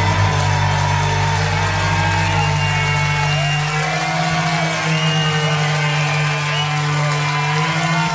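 A live rock band's closing chords held and ringing out, with the bass dropping away about four seconds in. High whooping voices from the crowd rise over the ringing chords in the second half.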